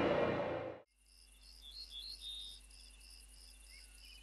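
A music sting that cuts off abruptly under a second in, then faint insect chirping, evenly repeated about three times a second.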